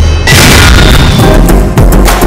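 TV channel ident music: a deep sustained bass boom, with a loud burst of noise about a third of a second in and a falling sweep near the end.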